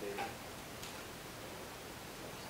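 Quiet lecture-hall room tone with a faint, distant voice from the audience at the start and a single faint click a little under a second in.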